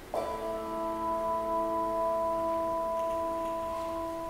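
A bell struck once just after the start, ringing on with several steady tones that slowly fade. It is rung after each name of the departed is read aloud.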